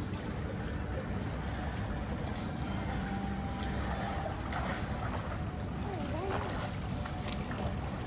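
Steady outdoor background rumble at a rooftop pool, with faint distant voices in the middle.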